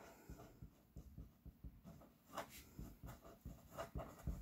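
Faint, short strokes of a felt-tip marker writing on paper, one after another.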